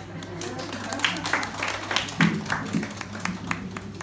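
A small audience clapping in scattered, uneven claps that start about a second in, with people talking underneath.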